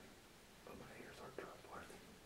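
Near silence, with a person's faint whispered speech from a little past a second in.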